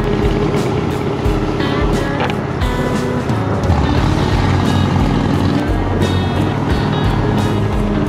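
Motorcycle engine running steadily under way, mixed with background music that has a regular beat.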